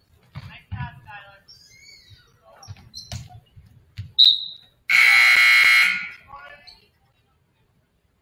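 Gymnasium scoreboard horn sounding one steady buzz for about a second, right after a short, sharp referee's whistle blast has stopped play. Before them come scattered shouts and a sharp knock.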